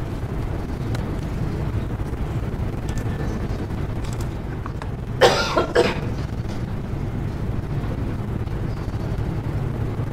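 Steady low rumble of room noise, with a person coughing twice in quick succession about five seconds in.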